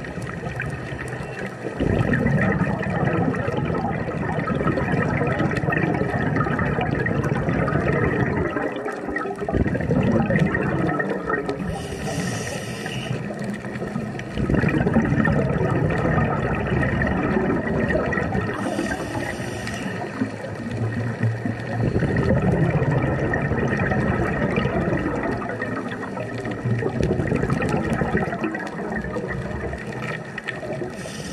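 Scuba diver's breathing through a regulator: long surges of exhaled bubbles rushing and gurgling, separated by short hissing inhalations, in a slow repeating cycle.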